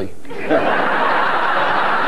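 Studio audience laughing: a broad wave of laughter from many people swells about half a second in and carries on at a steady level.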